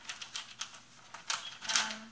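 A curled strip of paper shipping labels being handled on a tabletop: paper rustling and crinkling in several short, crisp bursts.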